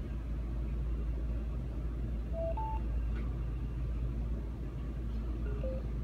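JS-BASE Bluetooth headphones sounding their prompt tones as the button is held down: a short rising two-note beep about midway, then another lower rising two-note beep near the end, as the headset powers on and goes into pairing mode. A steady low hum runs underneath.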